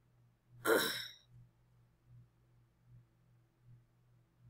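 A woman sighs once, a short breathy exhale about a second in. After it there is only a faint low hum.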